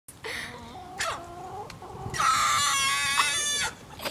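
Hen giving a few short calls with a sharp burst about a second in, then a loud, drawn-out squawk of about a second and a half.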